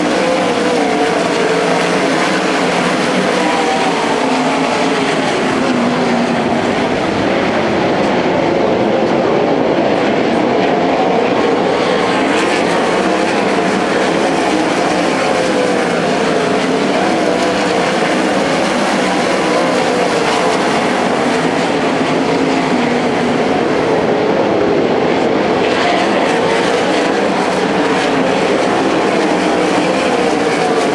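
A field of winged sprint cars racing, their V8 engines at high revs in a continuous loud drone, the engine notes wavering up and down as the cars pass and go through the turns.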